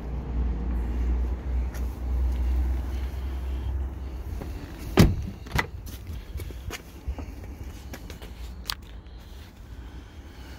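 A car door of a 2017 Lexus GX460 shut with one loud thud about halfway through, followed half a second later by a lighter click as the rear door's latch opens, and a few small clicks after. Before the door, a low rumble.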